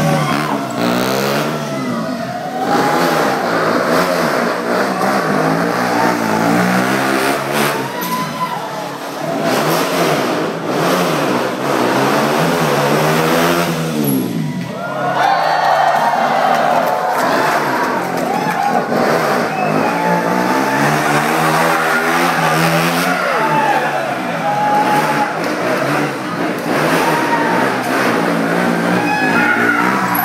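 KTM Duke motorcycle's single-cylinder engine revved hard during stunt riding, its pitch climbing and falling again and again every few seconds as the throttle is worked through wheelies.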